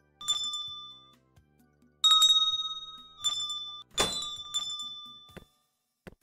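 Brass shop-door bell on a spring bracket jingling, struck about five times with a clear ringing tone that dies away after each strike, the loudest about two seconds in. A short knock near the end.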